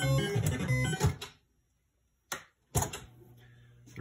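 Gottlieb Caveman sound board playing its looping background music through the pinball machine's speaker. The music cuts off about a second in, followed by two short pops and a faint low hum.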